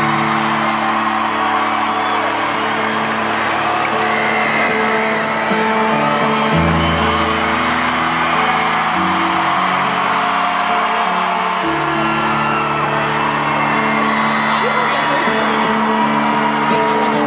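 Slow, held chords on a stage piano, changing every few seconds, under an arena crowd cheering and whooping.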